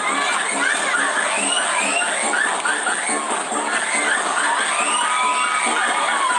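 A crowd cheering and shouting excitedly over music with a steady beat.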